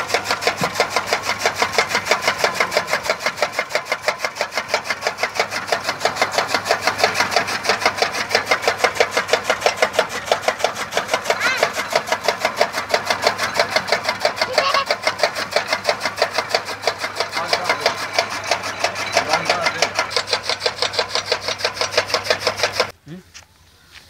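Electric-motor-driven chaff cutter chopping green fodder: the flywheel's blades cut in a fast, even rhythm of about five chops a second over a steady motor hum.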